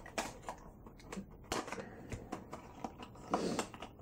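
Cardboard box and packaging being handled as a 1:64 diecast truck is taken out: irregular light clicks, taps and rustles, a little louder about three and a half seconds in.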